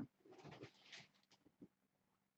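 Near silence: faint movement sounds of a person leaning forward off a sofa, then a few soft clicks.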